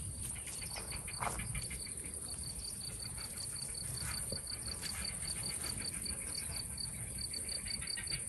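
Crickets chirping in a fast, even rhythm, about six chirps a second, over a continuous high-pitched insect buzz.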